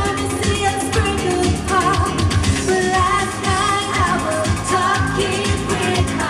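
Live dance-pop song: a woman singing into a microphone over a backing track with a steady kick-drum beat, heard loud through the venue's PA.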